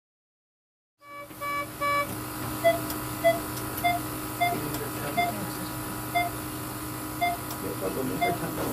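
Patient monitor beeping, starting about a second in with three quick beeps, then a steady run of short single beeps a little under a second apart that keep time with the patient's pulse, over a steady electrical hum.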